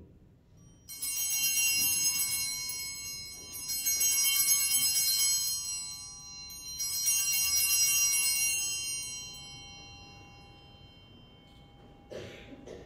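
Altar bells rung three times, about three seconds apart, each ring high and bright and dying away slowly: the bells that mark the elevation of the chalice at the consecration of the Mass.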